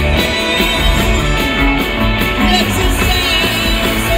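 Live rock band playing over a concert PA: electric guitars, bass and drums, with lead vocals. The bass and drums come in heavily right at the start.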